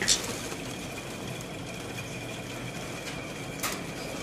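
A hand catching a bird inside a small wire birdcage: two short sharp rattling sounds, one at the start and one near the end, over a steady background with a faint high-pitched hum.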